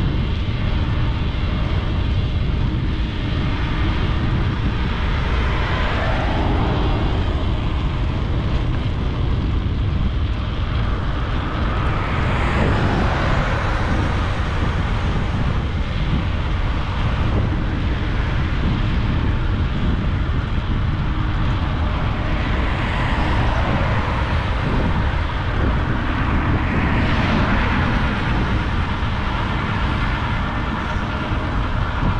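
Wind rumbling steadily over a bike-mounted action camera's microphone while riding, with road noise from vehicles swelling and fading past a few times.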